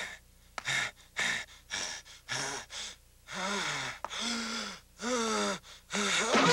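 A man's voice gasping, with several short sharp breaths, then three drawn-out groans in the second half.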